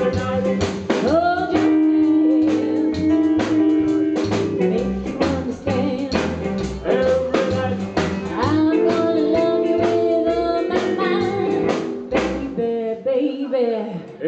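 Live rockabilly band playing: a woman singing held notes over upright double bass, electric guitar and a drum kit keeping a steady beat.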